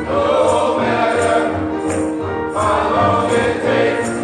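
Men's gospel choir singing, with a tambourine struck on a steady beat about twice a second.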